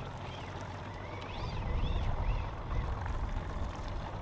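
Evinrude outboard motor running at low speed: a steady low drone that swells about midway through. Faint rising-and-falling whines sound above it.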